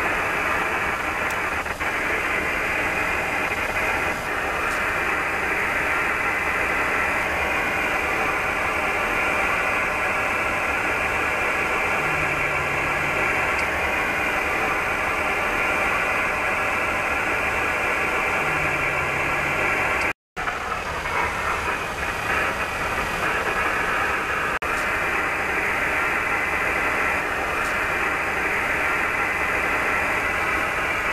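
Steady static hiss from an Airbus A340's HF radio receiver. It is interference from the static discharge of St. Elmo's fire as the aircraft flies through strong electric fields. It cuts out for a moment about twenty seconds in.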